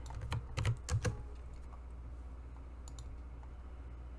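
Computer keyboard typing: a quick run of keystrokes over the first second or so, then a few scattered clicks.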